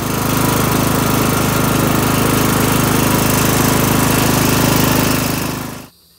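Poulan riding lawn mower's engine running steadily with a fast, even pulsing. The sound cuts off shortly before the end.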